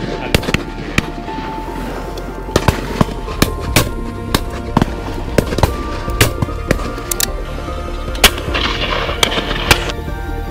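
Shotgun shots from a line of guns at a driven game shoot: many reports, some close and loud, others fainter and more distant, at irregular intervals. The loudest comes about eight seconds in. Background music plays throughout.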